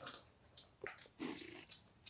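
Faint, short sounds from birds in a small room: about four brief noises spread across the two seconds.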